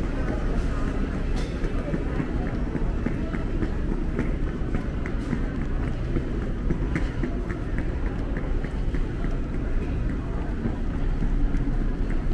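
Airport terminal concourse ambience: steady walking footsteps on a tiled floor, about two a second, over constant indistinct chatter of travellers and a low background hum.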